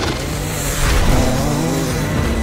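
Motocross dirt bike engine revving as the bike accelerates along the track, its pitch climbing in the second half.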